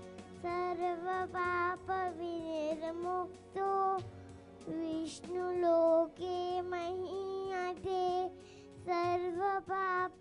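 A young girl singing solo into a handheld microphone, amplified through a PA: sung phrases of held, wavering notes with short breaths between them.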